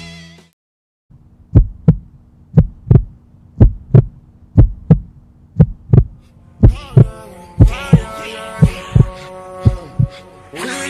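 Heartbeat sound effect: paired low thumps about once a second over a steady low hum, starting about a second in. Tonal music swells in over it from about six and a half seconds in.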